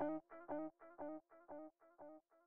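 The closing music's last guitar chord repeating about four times a second in a fading echo, dying away.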